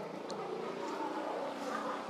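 A motor vehicle's engine droning, swelling louder during the second half as it passes.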